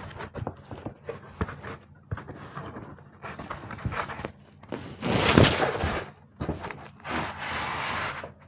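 Large cardboard box of an A2 drawing board being handled: scattered taps and knocks on the cardboard, with a louder scraping rush about five seconds in and another longer one near the end.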